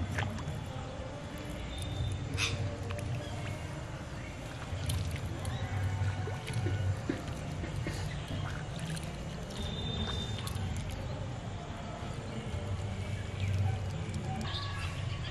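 Outdoor pond-side ambience: scattered short bird calls over a steady low rumble.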